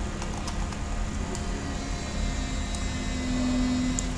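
Steady mechanical hum and hiss, with a few faint clicks and a low steady tone that swells near the end.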